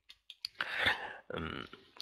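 A man's mouth and breath noises close to a headset microphone: a few small lip clicks, then two short breaths.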